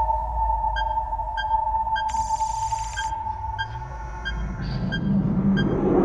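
Sci-fi electronic sound effects: a steady humming tone with a short beep repeating about every two-thirds of a second, a brief buzzing burst about two seconds in, and a low rumble swelling near the end.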